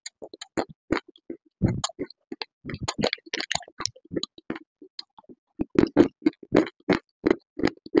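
Close-miked crunching and chewing of hard, brittle clay chunks, a quick string of sharp crunches with a short pause past the middle, then a denser run of bites near the end.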